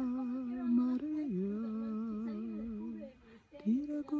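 A man's voice intoning long wordless held notes. He holds one steady note, steps down to a lower held note, pauses briefly for breath, then starts a new note near the end.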